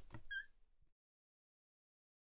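A single short, high squeak with a wavering pitch a moment in, then dead silence for the rest.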